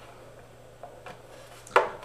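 A couple of faint clicks, then one sharp knock near the end, as screws and a wrench are worked at the backplate of a Flaxwood electric guitar while its longer screws are fitted.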